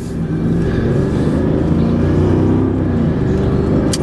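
Mercedes-Benz CL500's V8 engine and AMG sport exhaust heard from inside the cabin as the car accelerates away, the engine note building over the first half-second and then holding steady.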